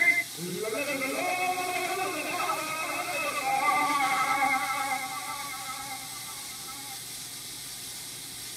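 Old 78 rpm record playback: a short melodic phrase with a wavering pitch fades out about five to seven seconds in, leaving steady record surface hiss and a low hum.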